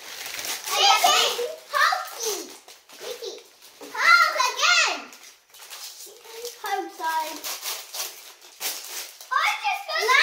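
Children's high-pitched voices exclaiming in short bursts, over the crinkling and crackling of foil blind-bag packets being torn open and handled.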